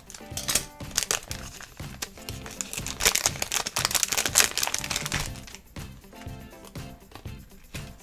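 Crinkling of a foil-plastic blind bag as it is cut open with scissors and handled, dense for the first five seconds and then thinning out. Quiet background music plays underneath.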